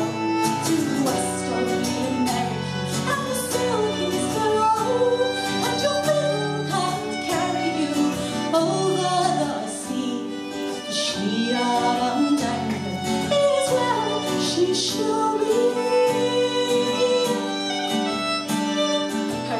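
Live folk song: a woman singing with a strummed acoustic guitar, and a violin playing along.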